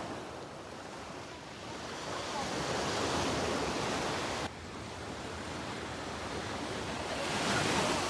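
Small surf breaking and washing up a sandy beach: an even rush that swells a few seconds in, drops suddenly about halfway, then builds again near the end.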